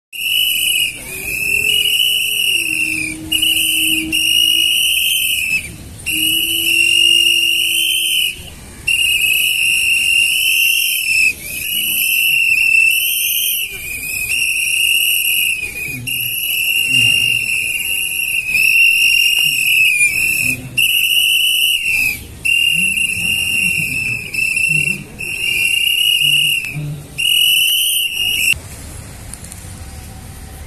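A shrill, high whistle-like tone blown in long blasts of one to two seconds each, with short breaks between them, stopping shortly before the end.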